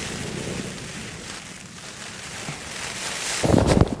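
Rain and wind on a cuben-fibre tarp shelter: a steady even hiss of weather on the fabric. Near the end, gusts buffet the microphone with a louder low rumble.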